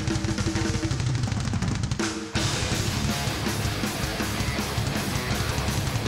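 Heavy metal band playing the opening of a thrash song live, driven by very fast kick drum and snare under held guitar notes. The band stops short a little over two seconds in, then crashes back in with cymbals.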